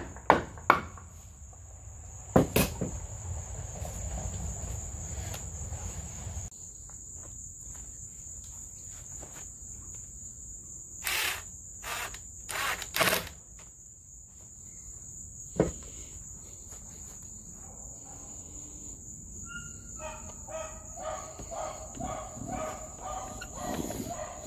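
Crickets chirring steadily, with two hammer blows on wood a few seconds in. Around the middle come several short bursts from a cordless drill driving screws into a wooden brace, and there is a single knock a little later. Chickens call near the end.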